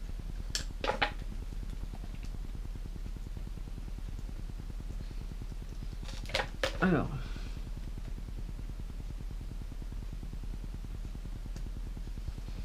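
Steady low electrical hum in a small room, with a couple of brief clicks and short voice murmurs, once about half a second in and again around six to seven seconds in.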